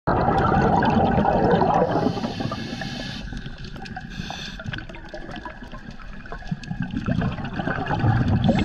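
Scuba diver's breathing heard underwater: a burst of loud bubbling from an exhale through the regulator, a short hiss of an inhale about two seconds in, then the bubbling building again near the end.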